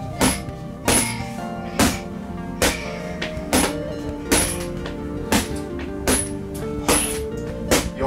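Rattan or wooden escrima sticks striking a hanging heavy punching bag in an uneven rhythm, about one hit a second, over steady background music.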